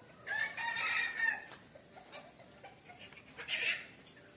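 A rooster crowing: one long call of just over a second, followed by a shorter burst near the end.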